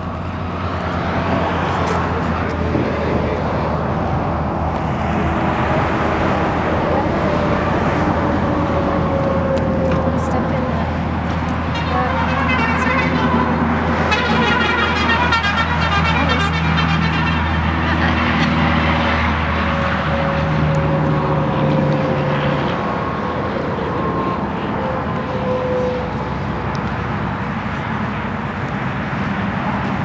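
Highway traffic: trucks and cars passing, a continuous drone of engines and tyres with slowly sliding engine tones. A louder pass comes about twelve to seventeen seconds in.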